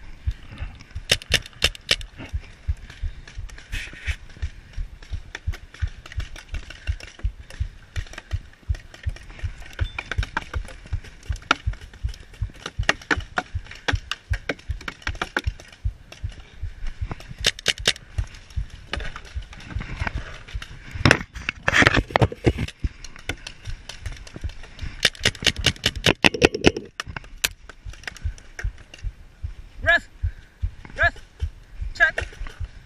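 Paintball markers firing: several bursts of rapid sharp pops, the loudest about two-thirds of the way through, over a constant low rumble.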